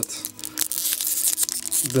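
Foil trading-card booster pack wrapper crinkling and tearing in the fingers as it is opened, a dense crackly rustle from about half a second in.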